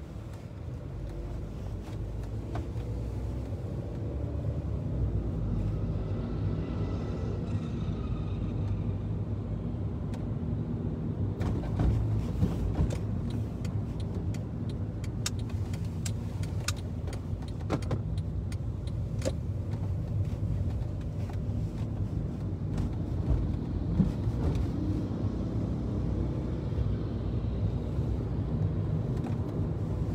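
Car driving, heard from inside: a steady low engine and road rumble that builds over the first few seconds, with scattered sharp clicks and knocks in the middle.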